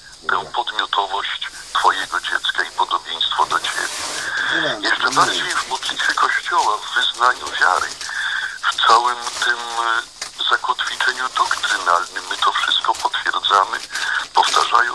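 Speech from a radio broadcast, thin and narrow in sound, over a steady hiss.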